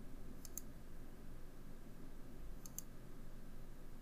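Computer mouse clicks: two short pairs of sharp ticks, one about half a second in and one near three seconds in, over a faint low room hum.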